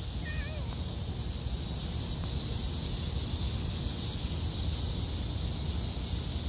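Outdoor ambience: a steady low rumble under a high, even drone of insects. A brief, faint warbling call comes just after the start.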